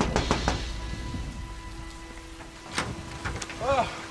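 A fist knocking on a wooden door, about four quick raps at the start, with a couple of fainter clicks near the end. Rain falls steadily under it, and a low thunder rumble fades out in the first second or so.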